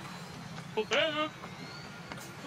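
A person's voice: one short vocal sound about a second in, over a steady low background hum.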